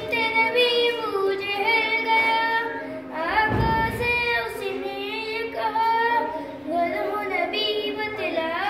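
A boy singing unaccompanied in long held lines that glide and bend between notes, in a chanted, recitation-like style. There is a short low bump about three and a half seconds in.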